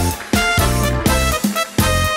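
Live band playing an instrumental passage of a chanson song: accordion carrying the melody over a drum kit, with sustained notes and a steady beat.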